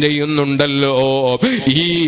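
A man's voice chanting in a long, held melodic line, the pitch bending and gliding between notes, with a short break for breath about two-thirds of the way through.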